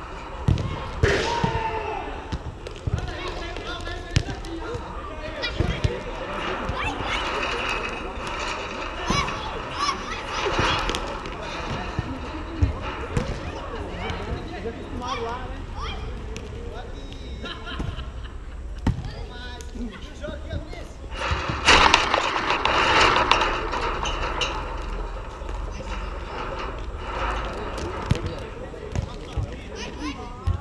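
Players' voices and shouts across a sand volleyball court, broken by the sharp slaps of a volleyball being hit, with a louder burst of voices about two-thirds of the way through.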